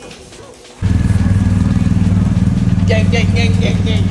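Motorcycle engine idling steadily, coming in abruptly a little under a second in.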